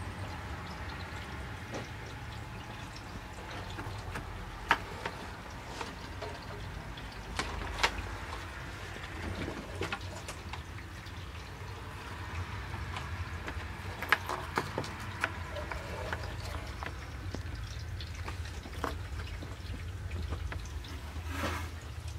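A cat moving about inside a cardboard box, with scattered light taps and scrapes of paws on cardboard over a low steady rumble.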